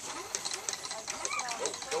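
Lure coursing line running through its pulleys as the lure machine drags the plastic-bag lure away: a fast, even mechanical clicking whir.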